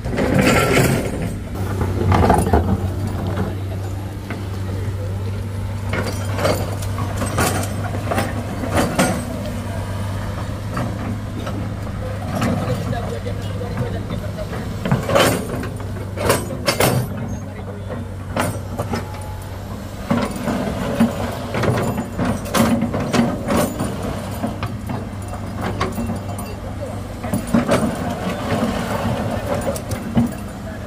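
Diesel engine of a hydraulic excavator running steadily, with repeated knocks and clatter as its steel bucket works loose earth and stones, and people talking. The steady drone fades about two-thirds of the way through, leaving the knocks and voices.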